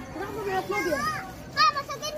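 Children's voices calling and chattering, high-pitched, in short overlapping bursts, with a louder call near the end.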